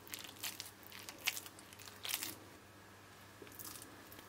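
Hands squeezing and pressing a wet eggplant, egg, breadcrumb and mozzarella mixture into a patty, in a few short soft squeezes, the loudest about a second and two seconds in, and a last one near the end.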